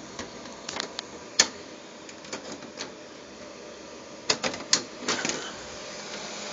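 Computer case fans running with a steady whoosh, broken by scattered light clicks and knocks, the sharpest about a second and a half in and a quick run of them near the end.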